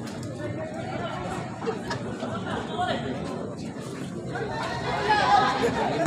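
Spectators' voices chattering beside the pitch, with a louder voice shouting about five seconds in.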